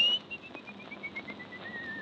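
Whistling on an old tango-era record: a rising whistle peaks, breaks into a quick string of short notes stepping down in pitch, then slides into a longer wavering whistle that keeps falling. It sits over the faint hiss and clicks of old record surface noise.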